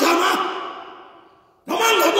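A man preaching in short, loud exclaimed phrases: one finishing just after the start and another starting near the end, the first dying away slowly in the echo of a large church between them.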